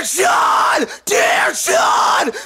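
Harsh screamed metalcore vocals opening a song: two long shouted phrases, each cut off abruptly.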